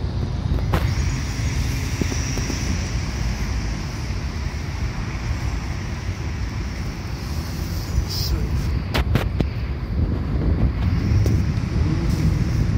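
Steady low rumble of city traffic at a busy square, mixed with wind buffeting the phone's microphone, with a few sharp clicks about a second in and again about nine seconds in.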